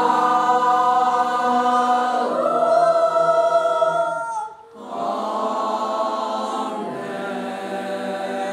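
Mixed choir singing held chords. The voices break off briefly a little past halfway and then come back in.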